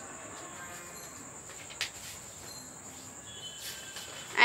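Steady high-pitched trilling of crickets, with one sharp click a little before halfway through.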